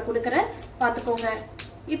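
A woman speaking, with one short click about one and a half seconds in.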